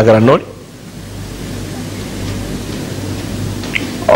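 Steady hiss with a low electrical hum, after a man's voice breaks off just under half a second in.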